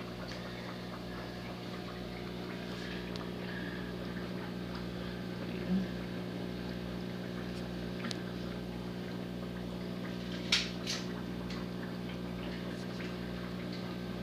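Aquarium water pump in a turtle tank running with a steady low hum and the sound of moving water. Two short sharp clicks come about ten and a half seconds in.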